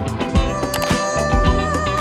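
Background music with a steady drum beat and bass line, with held notes coming in about half a second in.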